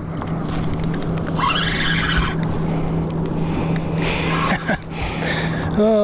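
A steady low motor hum at one unchanging pitch, with two short bursts of hissing noise, one about a second and a half in and one about four seconds in. A voice starts just at the end.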